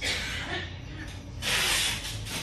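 Packing tape being pulled off a roll to seal shipping packages: a short screeching rip at the start and a louder one about a second and a half in.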